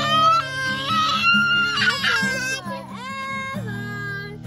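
A young boy singing loudly in a high-pitched voice that slides up and down, over a strummed acoustic guitar.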